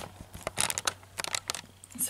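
Handling noise from a camera being moved: a scatter of light, sharp clicks and taps over quiet room tone.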